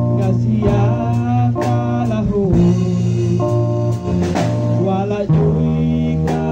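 A worship song sung into a microphone over a band accompaniment with guitar and a steady beat of about one stroke a second.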